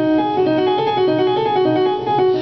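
Piano playing a quick run of single notes over a held C dominant chord (C, E, B flat), drawn from the blues scale on the sharp nine: E flat, F sharp, A flat, A natural.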